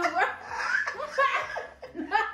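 Two women laughing hard in repeated short bursts.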